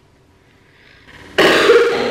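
One loud, rough throat sound from a person, a burp or hacking cough, starting about a second and a half in and lasting under a second.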